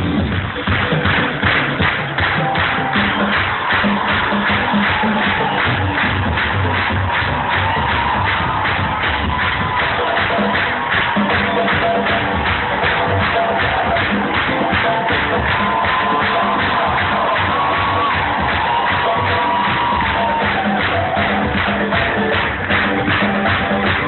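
Live band music playing loudly through an arena PA, with a steady beat of about two strokes a second and a melody line coming in over it in the second half. It is recorded on a phone from among the audience, so it sounds dull and cut off at the top.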